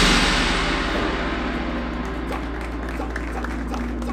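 Marching percussion ensemble letting a loud hit ring out: the cymbal wash and low held tones fade steadily, with a few soft taps.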